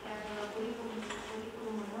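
A person's drawn-out 'mmm' hum, held on one gently wavering pitch for nearly two seconds and closing with a short 'hmm'.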